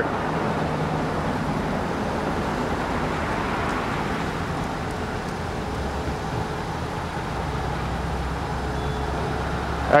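Steady road traffic noise, with a deeper low rumble swelling from about halfway through as a heavier vehicle goes by.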